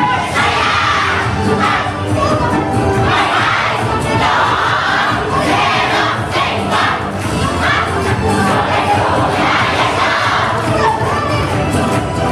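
A yosakoi dance team shouting in unison: a string of loud group calls, one every second or two, as the dancers rise from a crouch into the dance.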